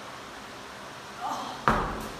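A medicine-style slam ball hits the rubber gym floor with one heavy thud about one and a half seconds in.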